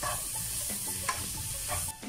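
Shredded cabbage, carrot and green capsicum sizzling in a nonstick wok while a spatula stirs and tosses them, with a few short scrapes of the spatula against the pan.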